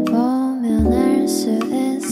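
Mellow lo-fi hip-hop music: sustained chords with some sliding notes over a slow beat, with low thumps near the start and about a second in.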